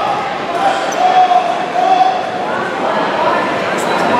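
Indistinct voices of people talking and calling out, echoing in a large hall, with a sharp knock near the end.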